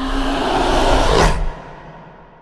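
Trailer sound-design swell: a loud rising whoosh over a low held tone, cut off sharply about one and a half seconds in, then dying away in a long echo.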